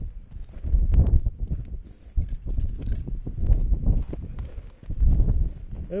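Wind buffeting the microphone in irregular gusts of low rumble, with a steady high hiss and a few faint knocks, one about a second in.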